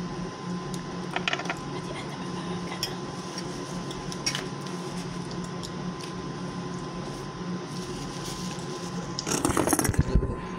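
Steady low hum of a small room with a few light clicks of oyster shells and cutlery, then a burst of rustling and knocking near the end as the phone is picked up and moved.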